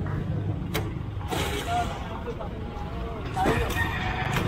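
Steady low hum of an idling truck engine, with a few knocks and a louder scrape of wooden boards being loaded onto the truck bed near the end.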